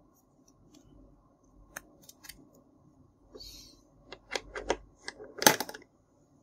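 Small hard-plastic toy utensils clicking and tapping as they are handled and hooked onto a plastic rack: a few sharp clicks, a brief scrape in the middle, then a quick run of clicks, the loudest cluster near the end.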